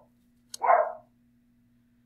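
A dog barking once, a single short bark about half a second in.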